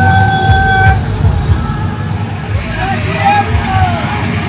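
A vehicle horn sounds one steady note for about a second at the start, over the continuous running of many motorcycle engines, with voices near the end.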